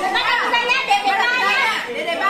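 Several people talking over one another in lively chatter; speech only.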